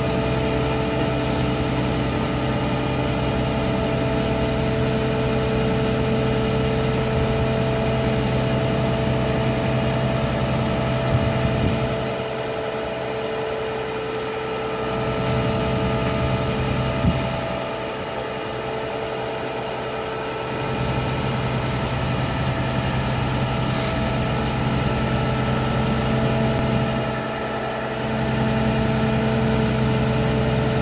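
Heavy diesel engine of a Goldhofer modular heavy-haul trailer rig running steadily with a constant hum. Its low rumble eases off three times, about twelve, seventeen and twenty-seven seconds in, then comes back.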